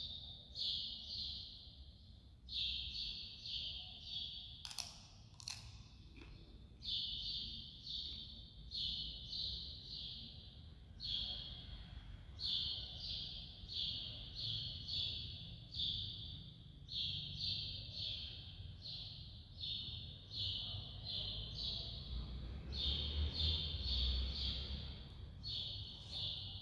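A bird chirping over and over in quick runs of two to four short high notes, with barely a break. Two sharp clicks about five and six seconds in.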